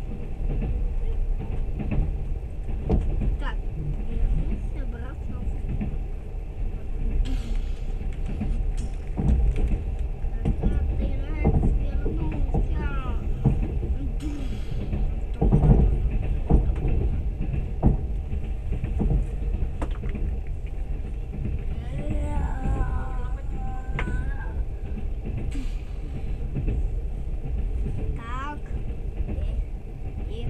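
Running noise of a moving train: a steady low rumble from the wheels and carriage, with occasional light knocks.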